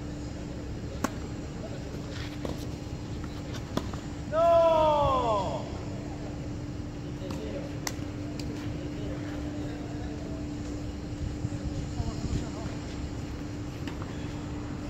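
Tennis racket strikes on a ball, a few sharp pops spread through the rally. About four seconds in comes a loud, drawn-out human cry that falls in pitch, over a steady low hum.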